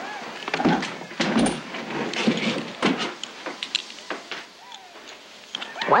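Poker chips being handled on a table: an irregular series of sharp clicks and clatters.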